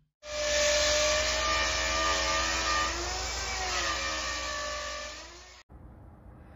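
A motor running with a steady pitched whine of several tones that sag and rise in pitch midway. It starts and cuts off abruptly.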